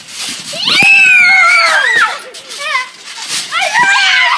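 A child's high-pitched shout, held for about a second and dropping in pitch at its end, starts just under a second in with a sharp thump at its onset. Shorter children's shouts follow.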